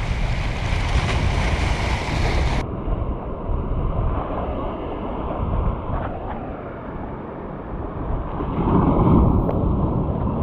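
Waves breaking and washing over jetty rocks, with wind buffeting the microphone. A louder surge of surf comes near the end.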